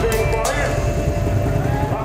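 Land Rover Defender engine running as the vehicle drives slowly past close by, heard under music and crowd voices.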